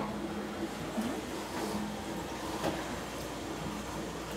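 Wooden spoon stirring cake batter in a plastic mixing bowl: soft, continuous scraping and sloshing, with a couple of faint knocks of the spoon against the bowl, over a low steady hum.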